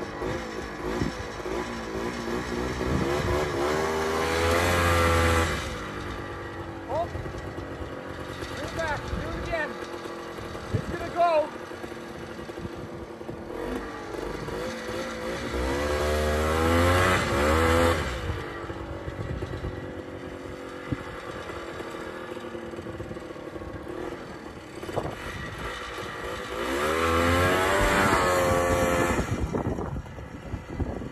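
Snowmobile engines revving hard three times, each surge climbing in pitch, as they strain to tow a heavy loaded sleigh that will not move, dropping back to a lower running sound between pulls.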